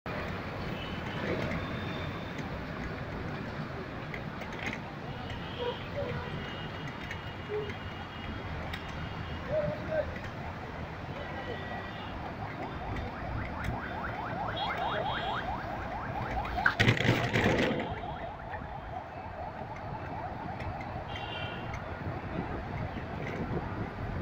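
Busy city street traffic heard from a rickshaw in slow traffic: a steady traffic din with scattered short vehicle horns. For a few seconds a fast, evenly repeating ringing builds, and about 17 seconds in a loud burst of noise stands out above everything else.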